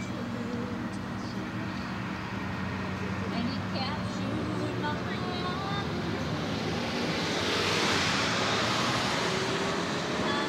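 Steady road and engine noise of a moving car, with indistinct voices mixed in. A louder rushing sound, like traffic passing, swells and fades about seven to nine seconds in.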